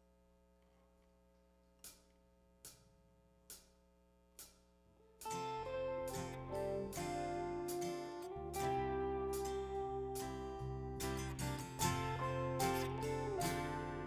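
Four evenly spaced clicks over a faint held chord, a drummer's count-in. At about five seconds a worship band comes in together: strummed acoustic guitar with electric bass, electric guitar and drums.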